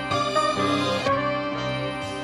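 Background music of sustained chords that change about once a second.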